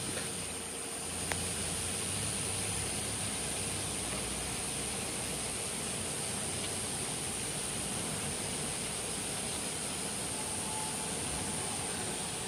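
Steady outdoor background noise: an even hiss with a constant high-pitched insect drone over it.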